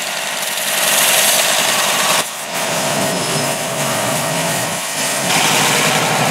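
Belt sander running, with a leather holster's stitched edge pressed against the belt to true up rough, uneven edges. The sanding hiss grows louder during two passes, from about half a second in to about two seconds, and again from about five seconds in.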